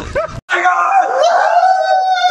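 A long, drawn-out howling cry, most likely a person's voice, starting abruptly about half a second in and holding one steady pitch for nearly two seconds.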